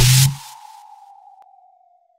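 Logo-reveal sound effect: a loud noisy whoosh with a deep rumble cuts off about a quarter second in, leaving a single ringing tone that slowly fades away, sinking slightly in pitch.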